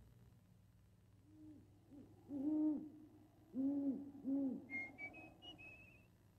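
An owl hooting: a series of low, rounded hoots, the loudest in the middle, followed near the end by a few short, high, thin notes that step upward.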